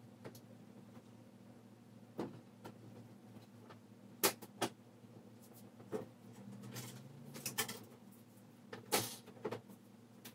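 Scattered clicks and knocks of a flat-panel TV's plastic frame and trim being handled as the set is turned over and lifted, the loudest a little after four seconds in and near nine seconds, over a steady low hum.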